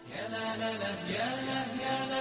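Background music comes in suddenly: a wordless, chant-like vocal melody of long held notes that glide between pitches, over a steady low drone.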